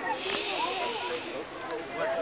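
A hiss lasting a little over a second that stops abruptly, over background voices.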